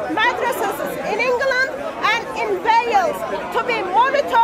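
People talking, several voices at once.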